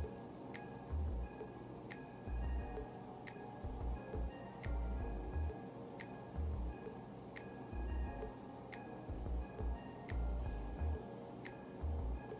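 Background music with a slow, steady beat: sharp ticks with short high notes over low bass pulses.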